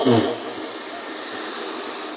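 Road traffic driving past: a steady rush of engine and tyre noise from cars and a minibus.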